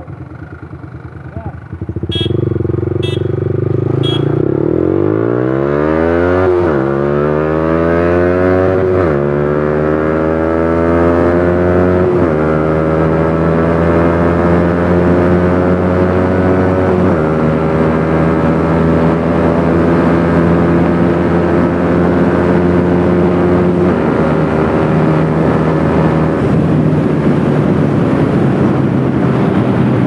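Yamaha R15 V3's single-cylinder engine with a full-system Akrapovic exhaust, recorded onboard, pulls away hard a couple of seconds in and revs up through the gears. Each of five upshifts brings a sudden drop in pitch before the note climbs again, reaching sixth gear. Three short high beeps sound at the launch.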